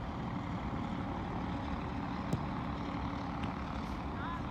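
Steady low outdoor rumble with a faint hum, and one sharp knock a little past two seconds in, fitting a soccer ball being kicked.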